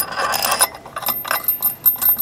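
Small metal clicks and clinks as a washer and bolt are handled and fitted onto the centre of an ATV's CVT primary clutch: an irregular run of light metallic taps.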